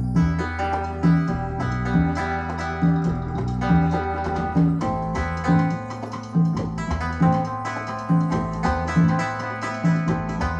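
Music from a vinyl record on a Rega P2 turntable, played through an SLAudio RIAA phono stage and floor-standing hi-fi speakers and heard in the room. It has a steady, even beat with a repeating bass note a little under once a second and plucked-string notes above it.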